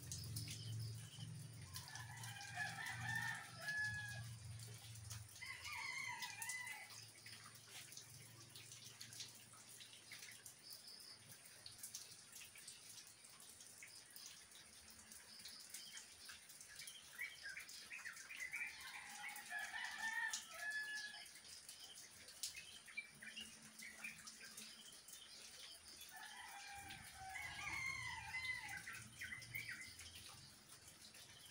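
Faint, steady rain falling on garden foliage, with scattered drips. A bird calls repeatedly in the background: a few seconds in, around six seconds, again in the middle stretch and near the end.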